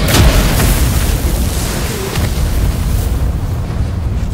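Sound-effect explosion: a heavy boom hits right at the start, then a deep rumble carries on and slowly eases.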